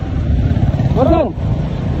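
Motorcycle engine running steadily while riding through traffic, a loud low rumble under the ride.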